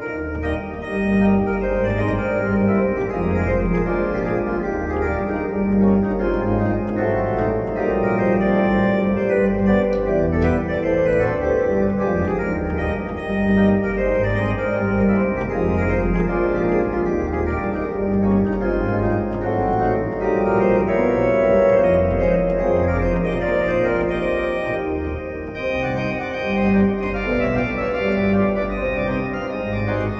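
Prestige 80 electronic organ played continuously on its manuals, chords and melody over a steady moving bass line.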